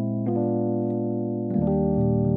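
Sonuscore RO•KI sampled electric piano playing sustained jazz chords. New chords are struck about a quarter second in and again about a second and a half in, ending on an E♭ major seventh.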